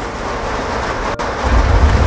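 A steady rushing noise, with a low rumble swelling in the second half.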